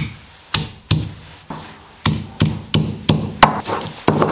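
Stone pestle (lohoro) pounding chutney ingredients on a flat Nepali grinding stone (silauto), stone knocking on stone. Three knocks, a short pause, then a steady run of about three knocks a second.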